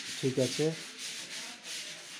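A steady rasping, sanding-like noise, with a brief fragment of a man's voice about a quarter second in.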